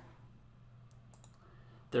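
A few faint computer mouse clicks about a second in, over quiet room tone.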